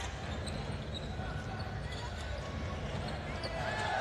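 Courtside sound of a live basketball game: a basketball dribbling on a hardwood court over a steady low arena hum.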